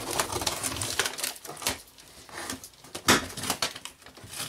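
A blade slitting the packing tape on a cardboard box: a run of rasping scrapes of tape and cardboard, with one sharp, loud scrape just after three seconds in.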